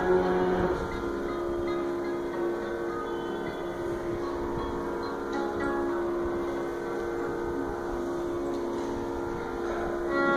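Steady drone of a Radel electronic tanpura holding the pitch alone, with no singing or bowing over it until pitched music starts again just before the end.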